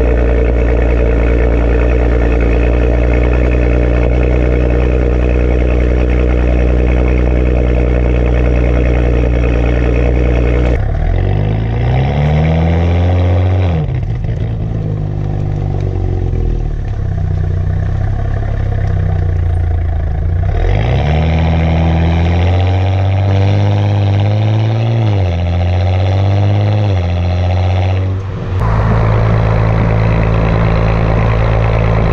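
Exhaust of a 2018 Audi S4's turbocharged V6, fitted with aftermarket front pipes and recorded right at the tailpipes. It holds a steady note for about the first ten seconds, then rises and falls in pitch several times as the car accelerates and shifts, with a quieter, lighter-throttle stretch in the middle.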